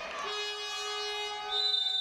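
Gym end-of-period buzzer sounding one steady, rich horn tone as the quarter's clock runs out. A second, higher steady tone joins about one and a half seconds in and holds past the end.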